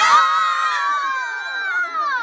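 Several children screaming together in one long, high squeal that starts suddenly and slides down in pitch near the end.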